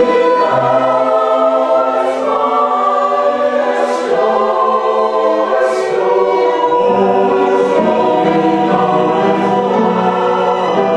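A choir singing slow, sustained chords with two violins playing alongside, the hiss of sung 's' consonants coming through about every two seconds.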